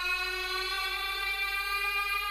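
A sustained drone of several steady tones held together without change, part of the soundtrack of a holophonic horror audio clip.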